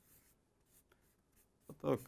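A marker pen writing capital letters on a flipchart paper pad: a few short, faint strokes of the tip on the paper.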